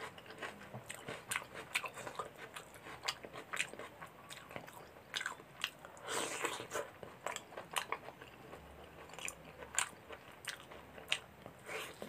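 Close-miked eating of bone-in chicken curry with rice: irregular wet chewing and biting clicks, with a longer, louder bite about halfway through.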